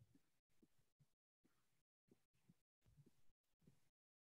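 Near silence: faint room tone that cuts in and out every fraction of a second.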